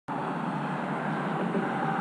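Steady rushing background noise with no distinct events or pitch.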